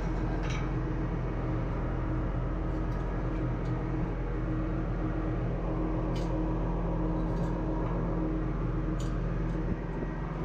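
Steady hum of a ship's engine-room machinery, made up of several steady low tones. A few faint clicks come through, one near the start and two in the second half.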